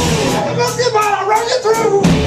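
Live punk-metal band playing, drums and guitar, with a karaoke singer shouting the vocals into a microphone over it.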